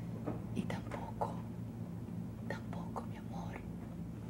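A person whispering softly, with faint breaths and mouth sounds, over a steady low hum.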